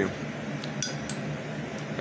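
A few faint, light clicks over a steady low hum.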